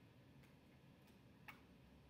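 Near silence: room tone, with two faint short clicks, the second about a second and a half in.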